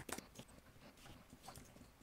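Faint, irregular clicks of a computer keyboard as a terminal command is typed.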